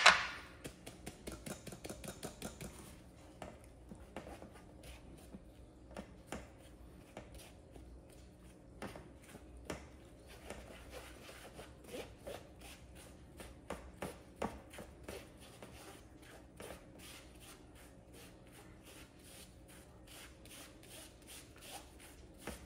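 Stainless steel mesh sieve being tapped and jiggled to sift flour and baking powder into a glass bowl: a sharp knock at the start, then a run of light, quick taps, several a second, that grow sparser in the second half.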